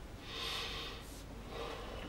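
Faint rubbing of a marker pen drawn in two strokes, a longer one and then a short one, as an answer is double-underlined.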